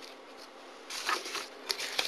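Paper rustling and sliding as a new sheet is laid over another on the table, starting about a second in, with a few sharp small clicks.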